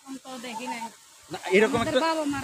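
A woman's voice speaking, with a brief pause about a second in.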